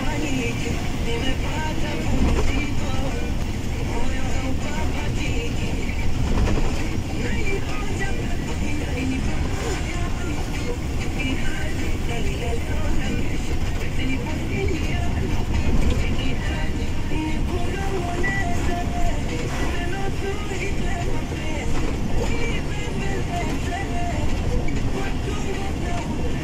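Steady engine and tyre noise of a moving truck heard inside its cab, on a rain-wet road.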